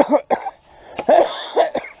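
A man coughing in a few hard bursts.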